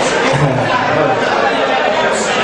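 Concert audience chattering in a large hall, a dense mix of many voices, with a man's voice briefly heard above it.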